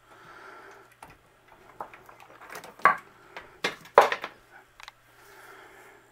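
Hanging cables with metal lugs being handled and knocking together: a few sharp clicks and rattles, the loudest about three and four seconds in, over a faint low hum.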